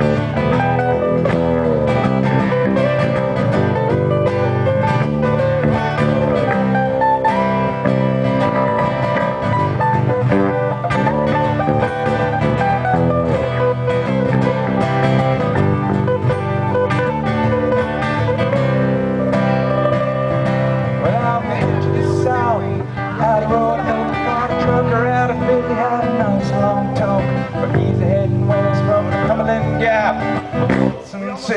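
Acoustic guitar played live: an instrumental passage of strummed and picked chords, without singing.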